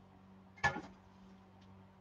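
A single short knock, a stool being moved, a little over half a second in, over a faint low steady hum.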